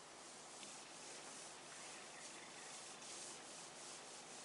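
Faint scratching of a marker pen writing on a whiteboard, in a series of short strokes.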